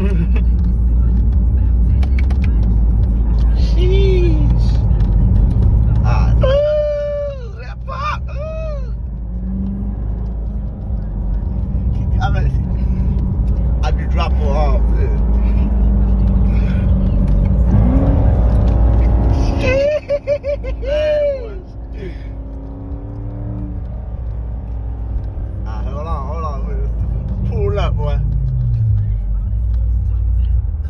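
A Corvette's V8 engine and road noise heard from inside the cabin while driving, a steady low drone. It eases off twice, about six seconds in and about twenty seconds in, and then builds again.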